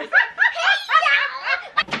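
Girls laughing in a run of short, high-pitched bursts, with a word spoken right at the end.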